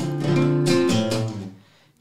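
Nylon-string classical guitar strummed in a quick corrido rhythm, several chords in a row, then left to die away in the last half second.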